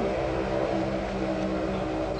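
Steady background hum, several even tones held level, under a constant hiss: the noise floor of an old lecture recording or its amplification.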